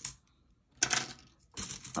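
Metal coins clinking as they are picked up and counted out by hand: a single click, a short pause, then two quick runs of clinks.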